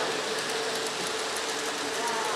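Model train running on a layout: light, rapid clicking of small wheels over the track with a small electric motor's running, against a steady hum and background noise.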